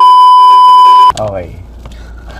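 Edited-in TV test-card tone: one loud, high, steady beep held for about a second and cut off abruptly, then a man's voice.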